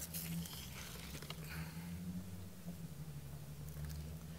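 Quiet background with a faint, steady low hum.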